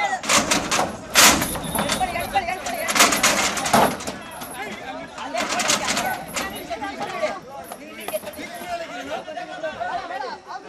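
Several men's voices talking and calling out. Loud, sharp bursts of noise cut in about a second in, around three to four seconds in, and around five and a half seconds in.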